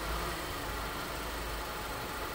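Car engine idling steadily with a low, even hum. It has restarted and keeps running despite a simulated crankshaft position sensor fault, a 5-volt signal forced onto the sensor line.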